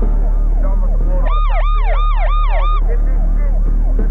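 Several sirens sounding over one another in fast rising-and-falling sweeps. One of them is much louder from about a second in until near the three-second mark, at about three sweeps a second. A steady low hum runs underneath.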